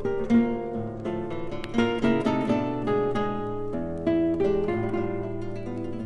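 Two classical guitars playing a piece together: quick plucked notes over chords, with a few accented chords.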